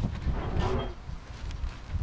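Plastic bag of raw chicken leg quarters crinkling as it is upended, the pieces sliding out and landing in a few soft, wet thuds on a plastic cutting board.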